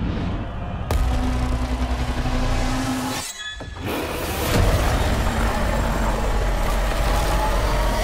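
Film-trailer score and sound design: a heavy impact about a second in opens a held low note, the sound drops out briefly a little after three seconds, then another hit brings in a loud, dense swell of music and effects.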